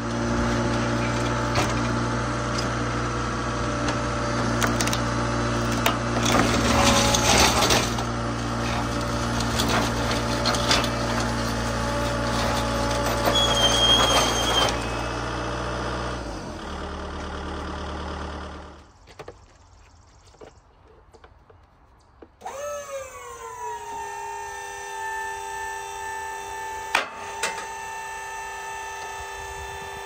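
A Bobcat Toolcat's diesel engine runs steadily with clanks and rattles, then drops away in two steps about two-thirds of the way through. After a short quiet spell, the pallet trailer's electric motor, worked by a handheld remote, starts up: its whine dips in pitch as it takes the load, then holds steady, with one sharp click near the end.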